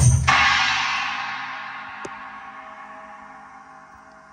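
Electronic drum kit: the drumming stops on a last cymbal crash, whose sound rings out and slowly fades away over the next few seconds. A faint tap comes about two seconds in.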